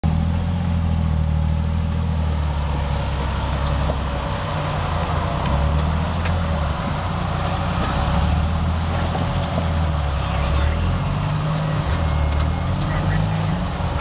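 Jeep Wrangler's engine running at low revs under load as it crawls over boulders, the revs rising and falling with the throttle.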